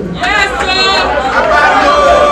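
A man speaking through a hand microphone and loudspeakers, with voices chattering in the room.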